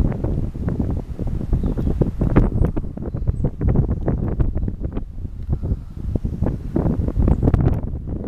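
Wind blowing across the camera's microphone, a loud, uneven low buffeting that rises and falls in gusts.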